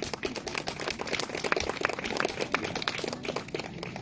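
Irregular light clicks and rustling, with no music or singing: a washboard band's members shifting and handling their instruments between songs.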